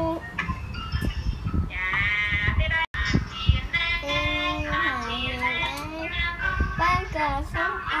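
A young boy singing a song, his voice sliding between held notes, with low thumps underneath and a momentary dropout about three seconds in.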